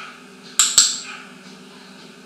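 A training clicker clicking twice, two sharp, bright clicks about a fifth of a second apart, marking the macaw's correct step-up onto the hand.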